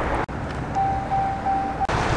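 Steady outdoor rushing noise with no speech. A thin, high, steady tone sounds for about a second in the second half, broken twice.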